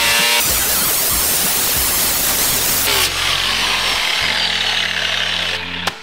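Angle grinder with a flap disc sanding mill scale off a hot-rolled steel bar, running loudly and steadily under load, then cutting off abruptly near the end.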